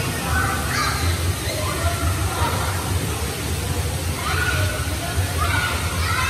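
Indoor swimming pool: steady splashing and spraying water from the pool and its water-play tower, with children's voices calling out now and then.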